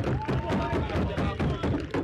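Excited voices shouting just after a goal, with one drawn-out call near the start over a busy, rumbling background.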